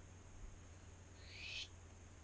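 Plastic gas tubing sliding down through a rubber uniseal in a plastic jar lid, heard as one brief, faint hiss about a second in, over a low steady hum.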